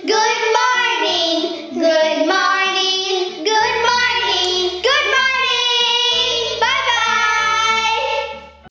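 Young girls singing a children's action song together over a backing track, with a low bass line coming in about halfway through.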